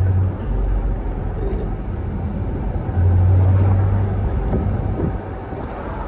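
Chevrolet Corvette Stingray C8 with its 6.2-litre V8 running at low speed while driving with the roof open, a steady low engine hum over road and wind noise. The hum grows louder for about a second around the middle.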